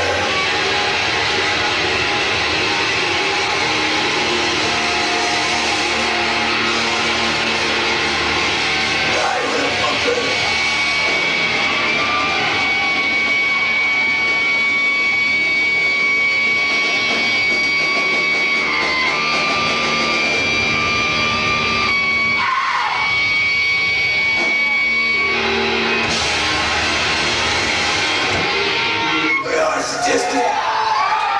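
Live thrash/death metal band playing loud: distorted electric guitars, bass and drums with shouted vocals, heard through a camcorder microphone in a club. From about twelve seconds in, a high steady tone is held over the band for roughly ten seconds.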